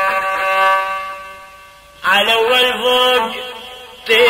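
Arabic 'ataba folk music: a long held note fades away over the first half, then a new phrase with wavering, ornamented pitch comes in loud about halfway through.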